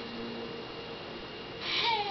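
Background music at a quiet moment: a held note fades out in the first half second, leaving a faint hiss, and a short hissing burst comes near the end as the singing starts again.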